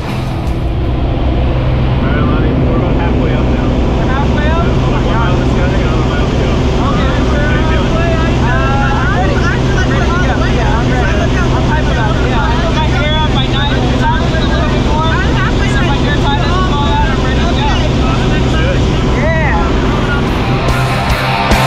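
Single-engine propeller plane's engine running steadily, heard inside the cabin in flight. People's voices talk over it from about seven seconds in.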